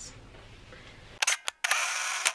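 Camera shutter sound effect laid over a 'REC' transition: a few sharp clicks about a second in, a brief cut to dead silence, then a short whirring rush of noise.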